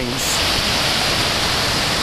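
Small waves breaking and washing up onto a sandy beach, a steady rush of surf.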